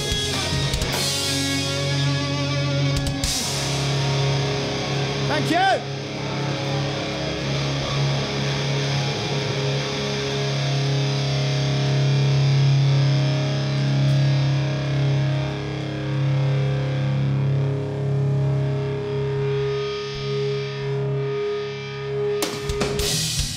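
Live rock band holding a sustained drone of distorted, effects-laden electric guitars over a long low bass note, with no drums. A short swooping pitch glide comes about six seconds in.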